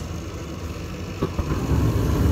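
Payne 80% efficiency natural gas furnace starting its heat cycle: the inducer motor hums steadily, the gas valve clicks open about a second in, and the burners light off the hot surface igniter, the low rumble of the flame then growing louder.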